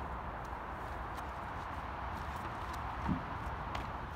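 Footsteps on asphalt, faint and regular, over a steady outdoor background hiss, with one brief low sound about three seconds in.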